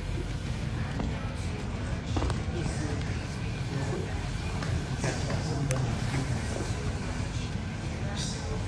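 Wrestling-room ambience: a steady low hum with faint background voices and a few light taps and scuffs on the mat.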